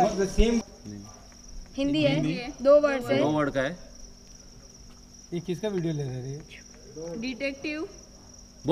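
Crickets chirping in a steady, high-pitched trill, with people's voices breaking in over it several times.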